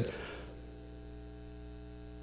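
Steady electrical mains hum from the stage sound system, several steady tones held at one level, as the echo of the voice dies away in the first half second.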